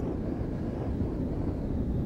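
Electronically generated windstorm sound, a steady deep rushing rumble, produced from the minute flickering of a candle flame picked up by a hidden camera.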